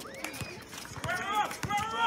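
Basketball players running on an outdoor court, with sharp footfalls and knocks, and shouted voices from players and onlookers starting about a second in.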